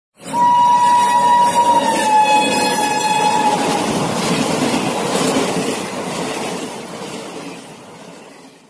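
A passenger train passes at speed. Its horn sounds for about three seconds and drops in pitch as the locomotive goes by. The rumble of the coaches follows and fades away near the end.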